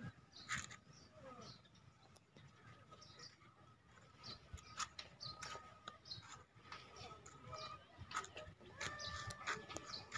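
Faint outdoor ambience with scattered short, high chirps and a few thin whistling tones, and a brief pitched call near the end.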